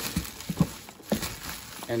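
Gloved hands mixing damp soil with dry leaves and sphagnum moss in a plastic tub: a few short rustles of leaf litter and moss being turned over.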